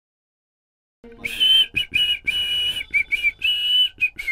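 About a second of silence, then a person whistling a cheerful tune in short, clear notes, some held, one dipping in pitch.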